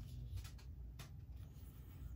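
Faint rubbing of hands on a toy figure as it is handled and turned over, with one light tap about a second in.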